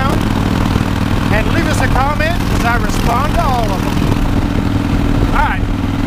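Harley-Davidson 2005 CVO Fat Boy's V-twin engine running steadily while cruising on the road, a constant low hum under a rider's voice.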